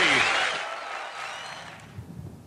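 Golf gallery applause, fading away steadily.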